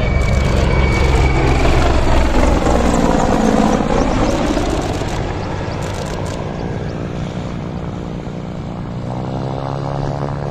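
Mil Mi-24V Hind helicopter's rotor and twin turboshaft engines passing low and then flying away. The sound is loudest a few seconds in and grows fainter from about five seconds in as the helicopter recedes.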